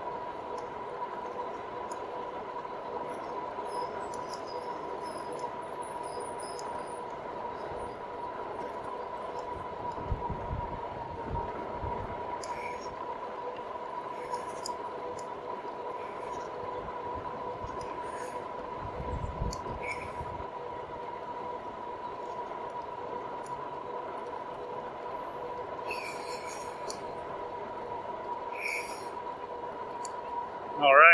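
Electric fat-tire bike (RadMini Step-Thru) riding on pavement at about 20 mph: a steady high whine from the drive over road and wind noise. Two low rumbles of wind on the microphone come about ten and nineteen seconds in.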